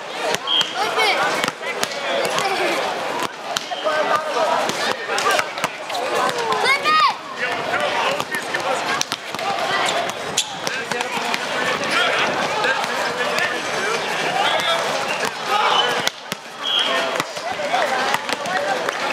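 Steady chatter and calls from players and spectators, with the sharp smack of a volleyball being struck several times during a rally.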